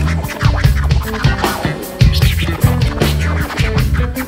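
A live band playing, with electric bass guitar and a drum kit, while a DJ scratches a vinyl record on a turntable, cutting short sliding sounds over the beat.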